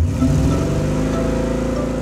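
Cartoon sound effect of a monster truck's engine revving as it pulls away, starting suddenly, rising briefly in pitch and then holding a steady note.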